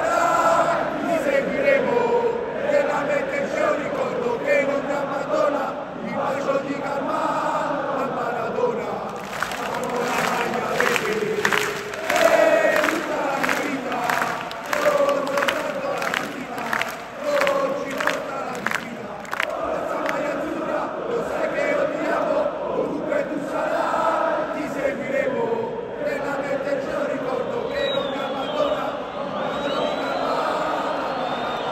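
Napoli supporters' end in a football stadium chanting and singing together throughout. For about ten seconds in the middle the chant is carried by loud claps in a steady rhythm.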